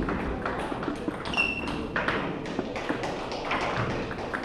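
Table tennis balls clicking on tables and bats in a large sports hall, over background chatter. A short high squeak is heard about a second and a half in.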